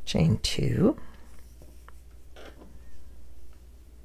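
A brief wordless vocal sound lasting under a second at the start, then faint scratchy rustling of yarn being pulled and worked over a crochet hook.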